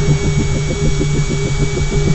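Intro-animation sound effect: a low mechanical whirring with a fast, even ratcheting pulse, as of a motorised mechanism turning.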